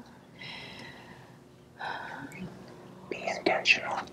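Hushed, whispered speech with breathy breaths, sparse at first and becoming a quick run of whispered syllables about three seconds in.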